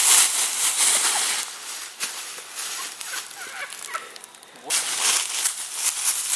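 Dry leaves rustling and crunching, loud for the first second or so and again from about five seconds in, with a quieter stretch between.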